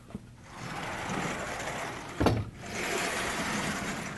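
Sliding blackboard panels being pushed along their vertical tracks: a steady rumble in two stretches, split by a short knock a little past two seconds in.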